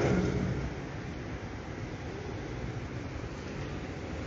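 The promotional video's music and voice fade out in the first second, leaving a steady, even background hiss of the room.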